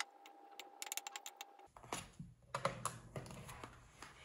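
A metal fork clicking and scraping quickly against a glass bowl while stirring pasta. Partway through the sound changes abruptly to a different room sound with a few scattered light taps and clicks.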